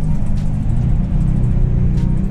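Steady low rumble of a city bus running, heard from inside the passenger cabin.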